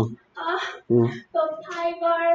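A child's voice in a sing-song, with short voiced syllables and then one long held note near the end.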